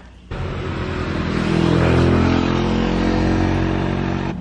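A motor vehicle engine running close by, starting suddenly just after the beginning, growing a little louder toward the middle and holding steady.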